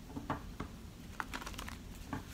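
A few light, irregular clicks and taps from tarot cards being handled.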